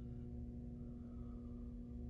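A faint, steady low hum made of a few constant tones, unchanging throughout.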